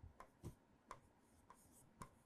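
Faint, light taps and scratches of a stylus writing on a tablet screen: a handful of short, soft clicks spaced irregularly, in near silence.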